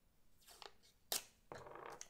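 Low-tack masking tape being pulled from its roll and torn: a sharp snap about a second in, then a short rasp lasting about half a second.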